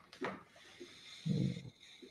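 A man yawning as he stretches: a long breathy inhale and exhale, with a low voiced groan, the loudest part, a little past the middle.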